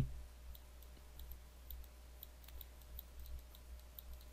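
Faint, irregular light clicks from a computer pointing device while annotations are hand-drawn on screen, over a low steady electrical hum.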